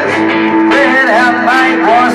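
Live solo performance: an electric guitar played through an amplifier, with one note held steady under a man's singing voice.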